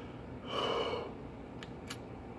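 A man breathes out hard through his mouth once, about half a second in, a reaction to the heat of spicy salsa he is eating. Two faint clicks follow near the end.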